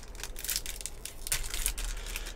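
Crinkling and rustling of a Topps Holiday baseball card pack wrapper handled in the hands, in a few short scratchy bursts.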